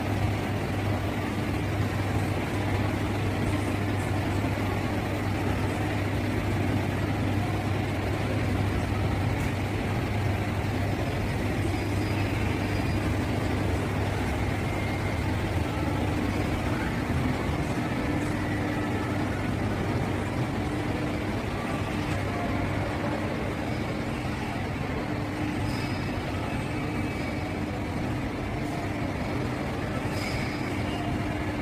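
Steady low hum over an even rushing noise, the sound of a large indoor hall's ventilation running. The hum eases about halfway through.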